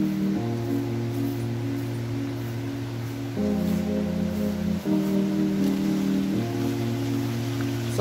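Background music: held chords over a steady bass note, the chord changing four times.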